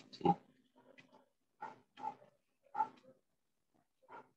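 Short, choppy fragments of a voice cutting in and out, about five or six brief bursts with gaps of silence between them: speech breaking up over a video call on an unstable internet connection.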